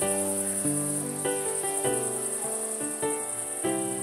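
Crickets chirping in a continuous high, pulsing trill. Under it, soft background music of held notes, a new note every half second or so.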